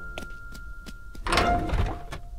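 Cartoon sound effects of lift doors sliding shut with a thunk in the second half, after a few light footstep clicks.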